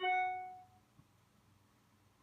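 A single chime that rings out and fades away within about half a second, followed by a faint click about a second in.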